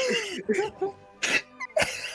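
A person's voice making three short, sharp, cough-like bursts in quick succession, with softer voice sounds between them.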